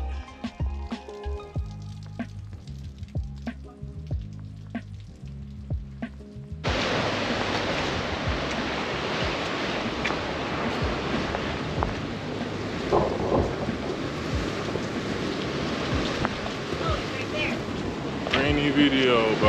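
Background music with a steady beat cuts off suddenly about six and a half seconds in. It gives way to a loud, steady rush of wind, rain and sea surf on the camera microphone.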